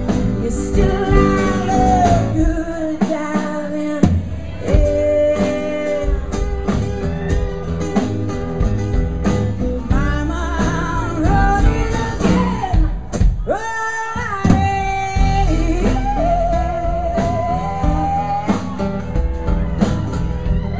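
Live blues-rock band playing, with acoustic guitars, bass and drums, and a woman singing over them.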